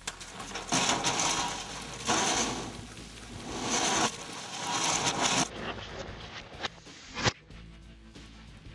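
A herd of blue wildebeest bolting from a water trough, hooves pounding dry sandy ground and kicking up dust, in three loud surges of noise. Two sharp knocks follow near the end.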